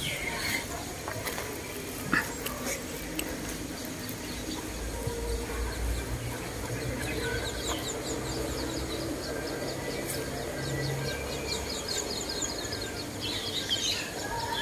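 Birds calling outdoors, with quick runs of short high chirps about halfway through and again near the end. A steady low hum runs under them through the middle.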